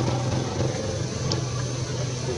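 Steady low hum, like an engine running, over an even background hiss, with one faint click about a second in.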